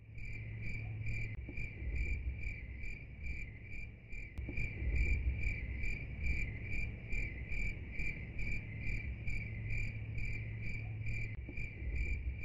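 A cricket chirping steadily, about two and a half chirps a second, over a low background rumble.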